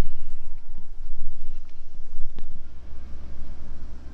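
Low, uneven rumble of wind buffeting the microphone, with one faint click about two and a half seconds in.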